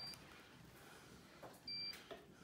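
Two short, high-pitched electronic beeps from a handheld acupoint pen device held against the wrist: one just at the start and another, about a third of a second long, near the end.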